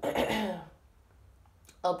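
A woman clearing her throat once, briefly.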